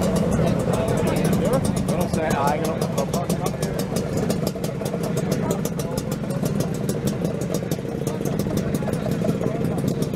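Several Vespa scooter engines running at idle, a steady low drone with a rapid, even ticking, under the chatter of a crowd.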